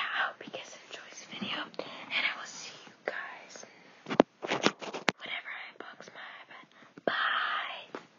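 A girl whispering, with a few sharp clicks about four to five seconds in.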